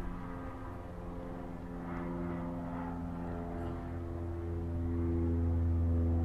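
Airplane flying overhead, a steady engine drone that grows louder in the second half.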